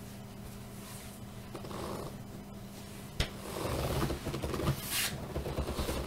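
Clothes being handled and rustled as a garment is put down and the next one picked up, with a sharp click about three seconds in and louder rustling through the second half, over a faint steady hum.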